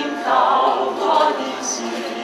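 Church choir of men's and women's voices singing a hymn together in sustained notes.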